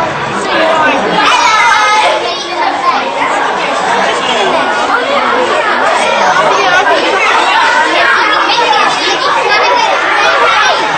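Hubbub of a group of children and adults chattering at once, many voices overlapping with no single voice standing out, in a large tent.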